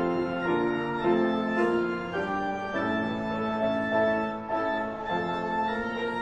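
Church organ playing a hymn in sustained chords that change about once a second.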